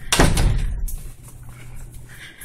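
A loud, brief rubbing and rushing burst of handling noise on the phone's microphone as the camera is swung around, fading within the first second. After it comes a faint low steady hum.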